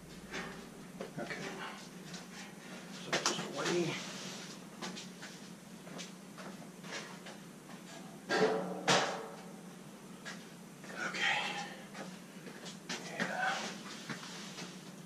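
Scattered light knocks and rattles from a dryer's sheet-metal front panel as it is lifted off, carried and set down, loudest about three seconds and eight seconds in. Brief muffled speech comes in between.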